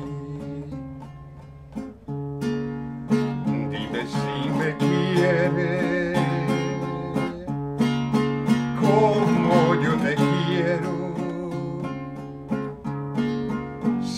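A man sings a slow Spanish love song with a wide vibrato on held notes, accompanying himself with strummed chords on a classical guitar. The guitar drops quieter briefly about a second or two in, then the strumming picks up again.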